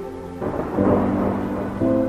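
Instrumental background music with sustained chords, joined about half a second in by a loud rushing noise that swells and fades over about a second and a half before the chords return.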